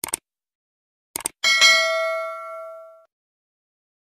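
Subscribe-button sound effect: a pair of quick mouse clicks, another pair about a second later, then a bright notification-bell ding that rings out and fades over about a second and a half.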